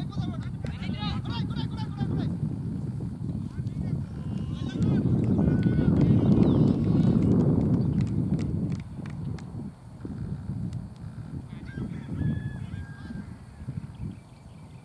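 Low, gusty rumble of wind on the microphone, swelling to its loudest about halfway through, with a few short, high calls heard faintly at the start, in the middle and near the end.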